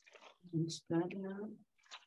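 Speech only: a woman speaking briefly and softly, the words not made out.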